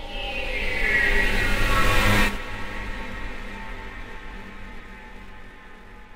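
Electronic intro sting. A swelling sound with a falling sweep builds for about two seconds, cuts off sharply, and leaves a low drone that fades out slowly.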